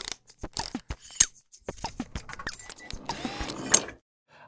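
Sound-effect intro sting of quick mechanical clicks and ticks, some sliding down in pitch, thickening into a denser rushing sound about three seconds in and cutting off suddenly.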